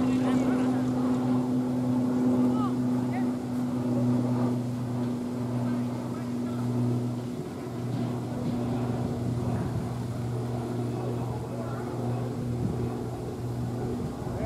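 A steady, low droning hum from a motor or machine running throughout, with faint distant voices over it.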